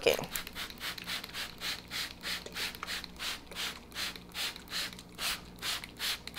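Small hand-pumped house-plant mister spraying water onto seed-starting soil: a quick regular series of short hissing squirts, about three a second.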